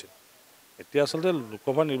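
A man speaking into interview microphones, starting again about a second in after a brief, near-silent pause.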